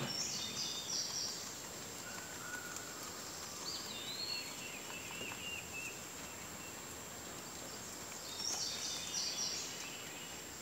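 Wild birds singing outdoors: a short high chirpy phrase near the start, the same phrase again near the end, and a falling call in between. Beneath it, faint crunching of domestic rabbits chewing fresh leaves.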